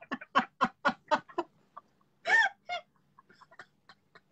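A woman laughing hard: a quick run of 'ha-ha' bursts, about four a second, then one louder, higher squealing laugh a little past halfway, trailing off into small, quieter giggles.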